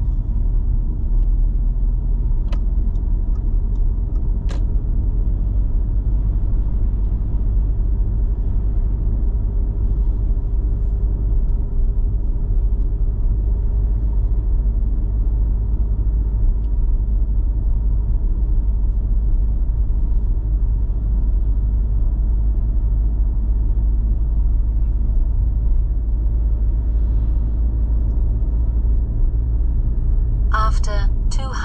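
Steady low road and engine rumble inside a moving car's cabin, with two faint clicks a few seconds in.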